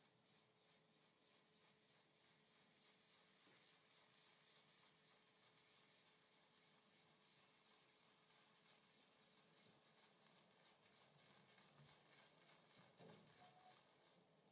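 Near silence, with faint scratchy rubbing of a badger-hair shaving brush being swirled over a tub of shaving soap to load it.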